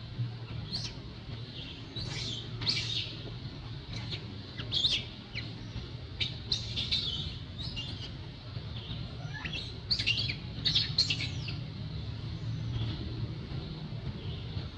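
Birds chirping in short, high, scattered calls that come in little clusters, over a steady low hum.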